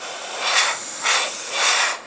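Airbrush spraying paint: a hiss of air and atomised paint that swells three times as passes are made and cuts off sharply at the end. The gun is running at about 20 to 25 psi.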